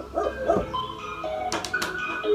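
The opening of a rap music video playing back as background music, with a few short sounds that slide up and down in pitch in the first half second.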